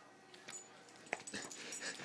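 A Rhodesian ridgeback gives a few faint, short whimpers while excited in rough play, starting about half a second in.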